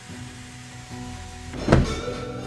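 Background music over a faint work-sound bed, with one loud thump near the end, a knock on the camper's wooden roof from someone working at the roof-vent opening.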